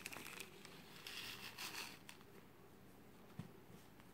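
Faint crinkling of a small plastic zip bag of seed beads being handled and opened, fading out about two seconds in.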